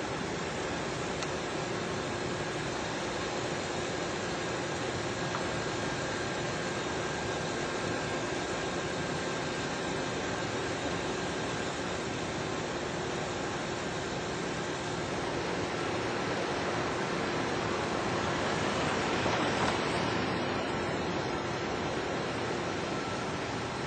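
Steady vehicle and traffic noise with a faint steady hum, swelling a little near the end.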